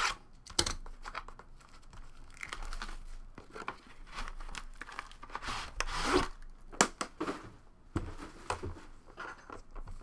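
Packaging being torn and crinkled as the box holding a Panini Flawless aluminium briefcase is opened, in irregular scratchy bursts with scattered sharp clicks and knocks. The longest stretch of tearing comes about five to six seconds in.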